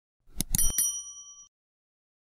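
Subscribe-button sound effect: mouse clicks, then a bright bell ding that rings on and fades out about a second and a half in.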